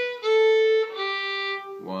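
Fiddle playing three slow bowed notes, each a step lower than the last: first finger on the A string, open A, then third finger on the D string.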